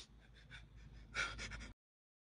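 A person's quick, heavy breaths and gasps close to the microphone, the loudest about a second in; the sound then cuts out abruptly to dead silence near the end.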